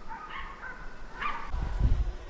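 Hunting dogs giving tongue on the trail of a wild boar, two short baying calls about a second apart, with a low rumble on the microphone near the end.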